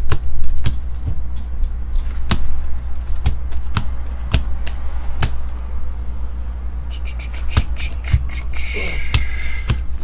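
2017 Panini Optic chromium baseball cards being flipped through by hand, the stiff cards snapping against each other in irregular sharp clicks, about one or two a second, over a steady low hum. There is a brief scraping rustle near the end.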